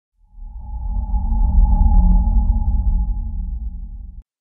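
Intro sound effect: a deep rumbling drone with a few held higher tones. It swells over the first second or two, then slowly fades.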